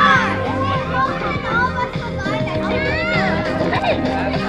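Many children's voices shouting and calling, over background music with a stepping bass line.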